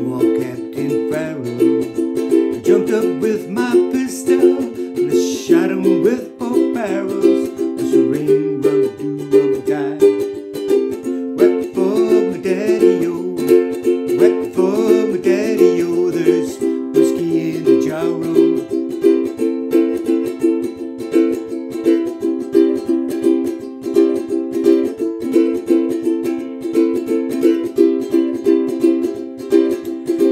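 Ukulele strummed in a steady chordal rhythm. A man's singing voice runs over it for roughly the first half, then the strumming carries on alone.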